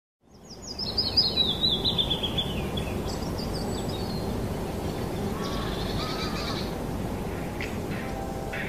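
Birds chirping over a steady background hiss: a descending run of chirps about a second in, then a few shorter calls later on.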